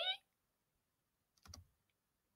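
A woman's sung 'eee', sliding upward in pitch like a slide whistle, cuts off right at the start. Then it is nearly silent, apart from a brief couple of soft computer clicks about one and a half seconds in.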